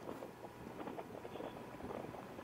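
Faint, steady wind and road noise of a motorcycle under way, heard through a helmet intercom microphone with its narrow, muffled sound.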